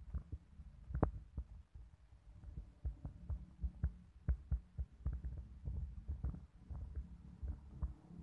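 Handling noise on a handheld phone's microphone: a low rumble with many irregular soft knocks and thumps.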